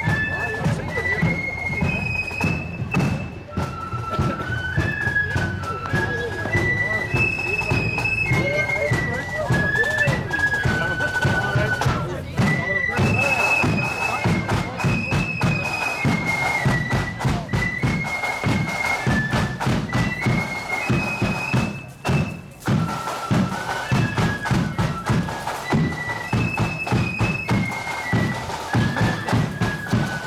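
A marching band playing a high, stepping melody over steady drumbeats, with brief breaks between phrases.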